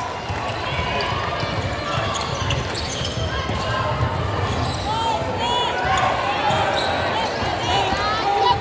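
A basketball bouncing on a hardwood court and sneakers squeaking in short chirps, the squeaks mostly in the second half, over the voices of players and spectators in the hall.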